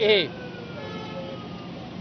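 Siren wailing in the background, its pitch falling slowly and fading out about a second and a half in, over a low background hiss.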